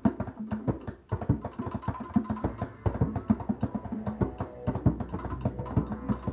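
Two djembes played by hand in a fast, dense rhythm of strikes, mixing deep bass tones with sharper slaps.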